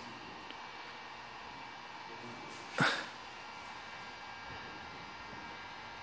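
Faint steady room tone with a thin hum. About three seconds in comes one short vocal noise from the man, falling sharply in pitch and over in a fraction of a second.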